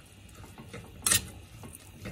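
Metal spoon stirring oatmeal and chopped vegetables in a stainless steel pot: soft scraping with small clicks, and one sharp clink of the spoon against the pot about a second in.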